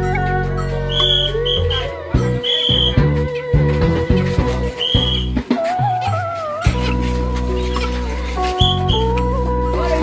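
Funeral music: a wavering lead melody over sustained low notes, with short high notes recurring every second or two.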